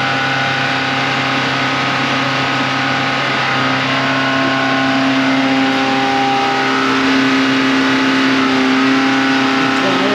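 A car engine running steadily at a constant speed, its tones stepping slightly in pitch about three and a half seconds in.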